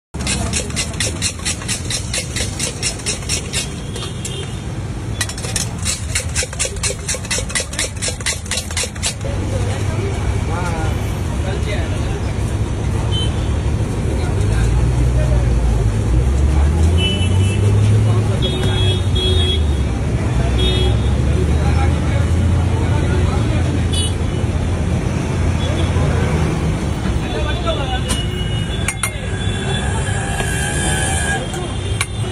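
Steel spoon clanging rapidly against a steel bowl as bhel is tossed and mixed, about five strikes a second in two runs over the first nine seconds. Then street traffic rumbles, with short horn toots and voices.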